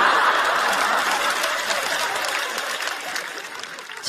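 Studio audience applauding and laughing in response to a comedian's punchline. The applause is loudest at first and dies away steadily.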